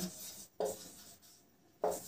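Marker pen writing on a whiteboard: a few faint strokes in the first second or so.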